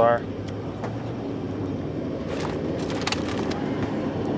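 A hand pressing a felt trunk liner against the inside of a car trunk lid, with a few short clicks and rustles about two and three seconds in, over a steady low background hum.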